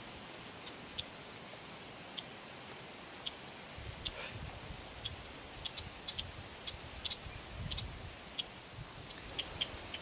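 Quiet outdoor ambience with many faint, short, high ticks scattered through it, and a low rumble that comes in about four seconds in.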